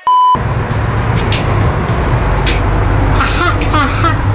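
A brief steady electronic beep, a test tone with the colour bars, cutting off a third of a second in. It gives way to a steady low rumble of street traffic, with scattered clicks and people talking faintly near the end.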